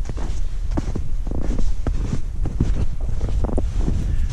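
Footsteps in snow, about two steps a second, with wind buffeting the microphone.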